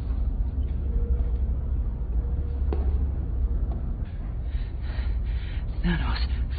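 Deep, steady rumble of film sound design, with a faint click about three seconds in and breathy gasps starting near the end.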